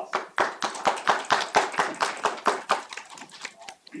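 A small audience applauding, with individual hand claps standing out rather than blending into a wash; the clapping thins and dies away near the end.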